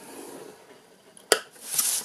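A metal scoring stylus scraping along a groove of a plastic scoring board, then a single sharp click, then card stock sliding across the board as it is turned around.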